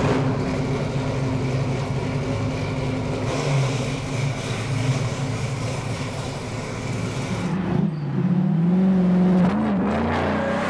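1968 Camaro convertible's 502 big-block V8 running steadily; about eight seconds in the revs rise and it grows louder as the car accelerates.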